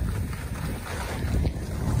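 Wind rushing over the microphone as the camera moves down a snowy ski run, a steady low rumble, with the hiss of boards sliding on packed snow.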